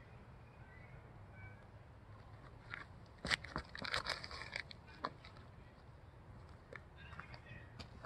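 A disc golfer's feet crunching and scuffing on the tee pad during a backhand drive. There is a quick cluster of sharp crunches about three to four and a half seconds in, as the throw is made, and one more scuff about a second later.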